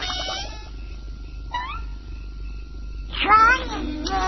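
Donald Duck's raspy quacking cartoon voice squawking angrily in short bursts. There is a brief rising squawk about one and a half seconds in and a louder outburst about three seconds in.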